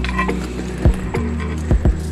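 Mother rattlesnake rattling, a continuous buzz, with a few short knocks in the second half.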